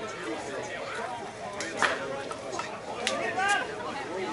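Indistinct voices of several people chattering and calling out, with one higher-pitched call near the end and two sharp knocks, one just before the middle and one about three seconds in.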